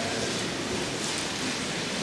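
Steady, even hiss of room and recording noise in a large hall, like light rain, with no distinct events.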